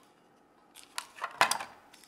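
Small accessories and their packaging being handled and set down on a tabletop: a few short clicks and rustles starting a little under a second in, the sharpest about a second and a half in.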